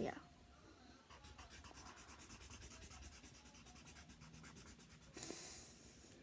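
Felt-tip marker rubbing on paper in quick, even back-and-forth colouring strokes, faint, with a louder brief rub a little after five seconds.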